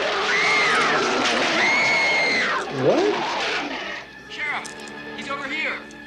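Soundtrack of a horror-themed music video playing: two long, high, wavering cries in the first half, then a low swooping sound and quieter short gliding voices over steady background tones.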